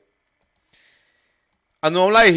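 A pause in a man's speech: near silence with one faint, brief noise about three quarters of a second in, then his voice resumes near the end.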